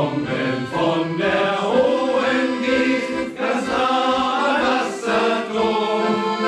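Men's shanty choir singing a German sea song together, with accordion accompaniment.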